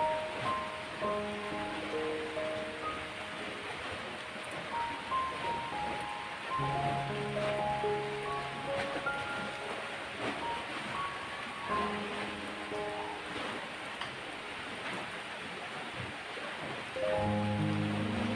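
Soft instrumental background music: a slow melody of held notes, with a low bass line coming in about six seconds in, over a steady hiss.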